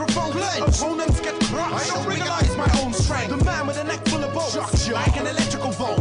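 Hip hop track: a man raps over a beat of kick drum hits and a held bass note.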